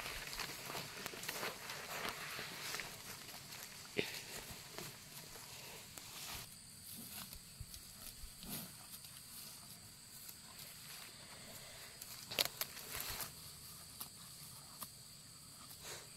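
Faint rustling and crunching of footsteps through grass and dry palm-frond litter, with a few sharp snaps. A thin, high, steady tone joins about six seconds in.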